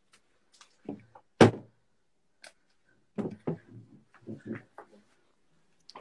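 Scattered knocks and bumps, the sharpest about a second and a half in, as a phone is handled and moved around a small room.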